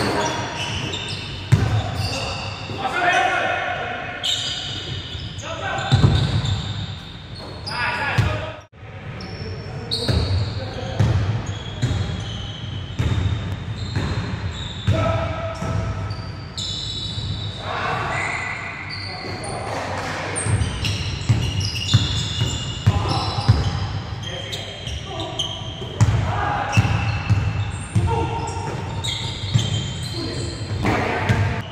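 Basketball bouncing on a hardwood gym floor during play, with players' shouts echoing in a large indoor hall.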